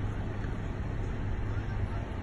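Steady low hum of a car's engine idling, heard from inside the cabin.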